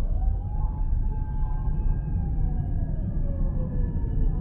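Emergency vehicle siren wailing: one tone rises near the start, holds, then falls slowly toward the end, over the steady low rumble of tyre and road noise from the moving car.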